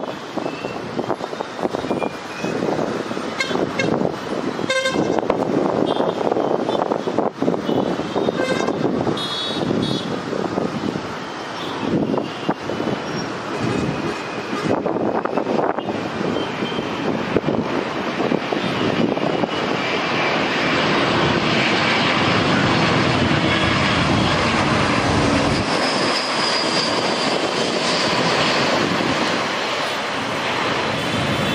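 City traffic with short horn toots in the first half, then the rush and high whine of a twin-jet airliner on final approach, growing louder from about twenty seconds in and holding there.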